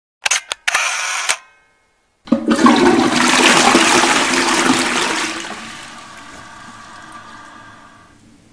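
A few sharp clicks in the first second, then about two seconds in a toilet flushes: a loud rush of water that slowly dies away into a faint, lingering refill.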